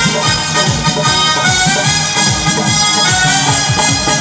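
Live band music played loud through a PA: sustained melody lines over a fast, steady drum beat, with no singing.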